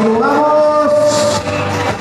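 A single long held note from the stage's sound system, sliding up slightly at the start and then holding steady for nearly two seconds.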